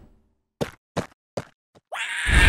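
Cartoon footstep sound effects: four light, short steps about 0.4 s apart, the last one faintest.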